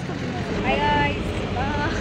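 Ride inside a moving bus with its door open: a steady engine and road rumble with wind noise. For about a second in the middle a high-pitched voice rises and falls.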